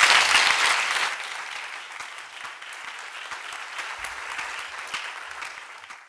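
Audience applauding in a large lecture hall. The clapping is loudest in the first second, then settles into steady applause.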